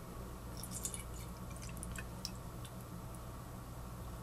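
Isopropyl alcohol being poured from a plastic bottle into a tall hydrometer test cylinder: faint, scattered drips and splashes of liquid, thinning out about three seconds in.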